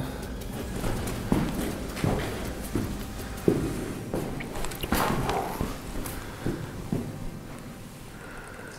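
Footsteps walking slowly across a gritty stone floor, in uneven steps, with a brief higher-pitched sound about five seconds in.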